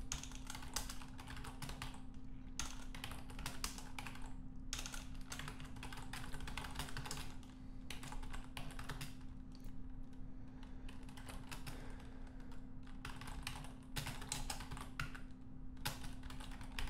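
Typing on a computer keyboard: quick runs of key clicks broken by a few short pauses.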